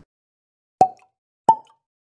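Two short water-drop plops, about two-thirds of a second apart, each a sharp click with a brief ringing tone, the second a little higher in pitch. They sit in complete silence, as an edited-in transition sound effect.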